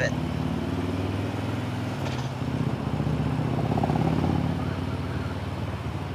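The rider's own motorcycle engine running steadily under way, a low even drone with road and wind noise; the sound swells a little about four seconds in.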